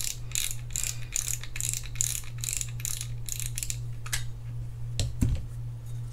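The front drag knob of a Shimano FX4000FA spinning reel being unscrewed, its drag clicker ratcheting in a steady train of clicks, about four a second. The clicking stops about four seconds in and is followed by a few single clicks as the knob comes free of the spool.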